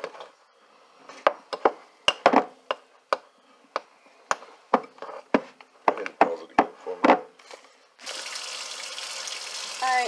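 Hands kneading seasoned ground venison sausage in a bowl: irregular short wet squelches, about two a second. Near the end the sound cuts to a steady hiss.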